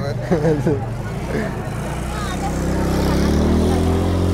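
A motor vehicle approaching along the street, its engine note rising in pitch and growing louder through the second half.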